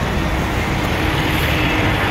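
Road traffic on a city street: cars and motorbikes passing, a steady wash of engine and tyre noise with a strong low rumble.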